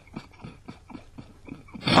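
A man's stifled, wheezing sniggering: quick short breathy gasps, several a second, with hardly any voice in them.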